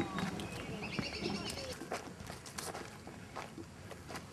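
Footsteps of a person walking along a dirt path through grass and undergrowth, an irregular series of steps, the first and loudest right at the start.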